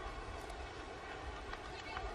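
Quiet outdoor ambience: a low, uneven rumble with a faint hiss and a few faint ticks, and no distinct event.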